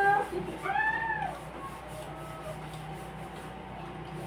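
A cat meows once, a single call that rises and falls in pitch, about a second in, just after a person's voice trails off.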